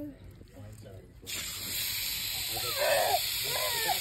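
Water spray from a lawn sprinkler hissing, starting suddenly about a second in as the spray reaches the child, with a young girl's voice calling out over it near the end.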